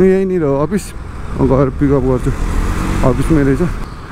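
A voice in short bursts over the steady rumble and road noise of a motorcycle being ridden in traffic, with a rushing hiss between the bursts.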